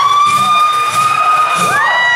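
Live rock band: one long high-pitched note held steady, with the rest of the band mostly dropped out, then a second, higher note taking over near the end.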